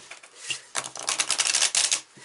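A deck of tarot cards being shuffled: a rapid run of dense card clicks that starts a little under a second in.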